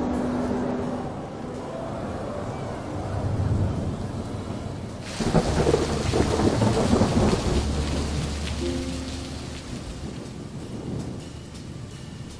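Rain falling, and about five seconds in a sudden loud clap of thunder that rumbles on and dies away over the next few seconds.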